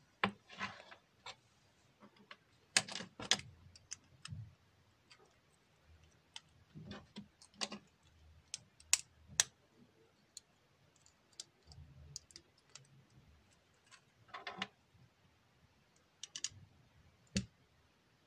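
Lego bricks being handled and pressed together by hand: irregular plastic clicks scattered throughout, with brief handling noise.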